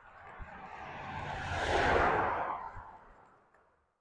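A vehicle passing close by: road noise swells to a peak about two seconds in, then fades away.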